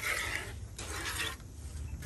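Steel trowel scraping cement mortar across the back of a ceramic tile, two strokes of about half a second each.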